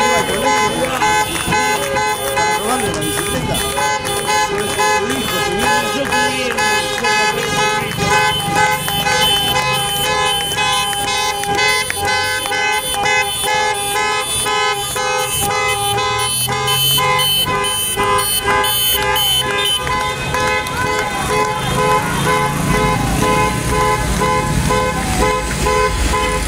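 Many car horns honking in a protest bocinazo, overlapping long blasts and short repeated toots with almost no break, drivers signalling support as they pass. Vehicle engine noise rises near the end.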